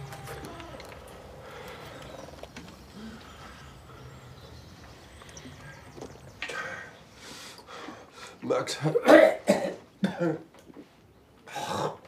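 A person coughing: after a quiet first half, a run of short, loud coughs starts about halfway through, heaviest about three-quarters of the way in, with another just before the end.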